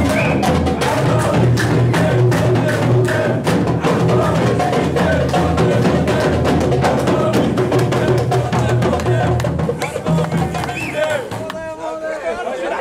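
A hand-held frame drum is beaten in a fast, steady rhythm while a crowd of men's voices sing and shout along. Near the end the drumming stops and the crowd's talk takes over.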